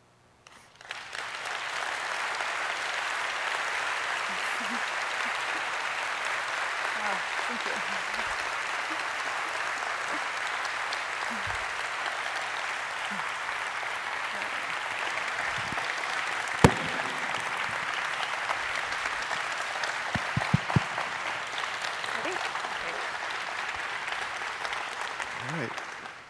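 A large audience applauding steadily for about 25 seconds, starting about a second in. One sharp click stands out about two-thirds of the way through.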